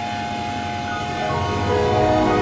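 A Windows system sound (startup or shutdown jingle) played through a layered pitch-shifting effect, heard as stacked electronic tones. A steady tone is held, then about a second in a cluster of higher tones enters and swells, growing louder near the end.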